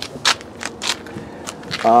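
A handful of short, irregular scuffs and clicks from someone moving with the camera along the trailer, then a brief spoken "um" at the end.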